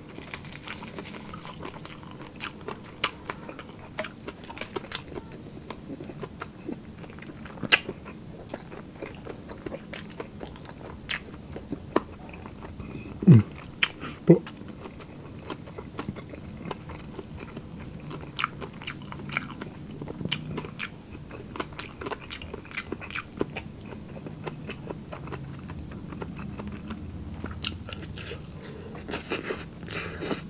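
Close-miked chewing and crunching of crispy deep-fried pork, with frequent sharp crackles and clicks as the crackling breaks between the teeth, loudest just under halfway through.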